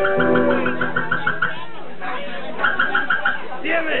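Electric guitar noodling between songs: a low note struck near the start and left ringing. Alongside it, a high tone pulses about six times a second in two short runs.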